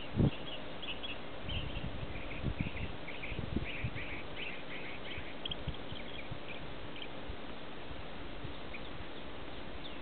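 Birds chirping in a quick run of short, high notes over the first six seconds, thinning out after that. A few dull low thumps on the microphone come near the start, over a steady outdoor hiss.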